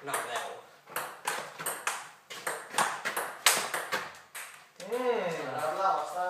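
Table tennis rally: the ball clicking back and forth off the paddles and the table, quick hits a few tenths of a second apart. A voice calls out near the end.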